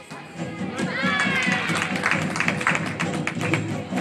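Music playing in a large hall, with a voice over it from about a second in and scattered short taps and knocks.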